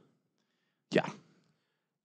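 A single short spoken 'yeah' about a second in, with near silence before and after it.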